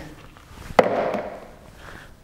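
A single sharp knock about a second in as a handheld anatomical eye model is put down, followed by a brief rustle that quickly fades.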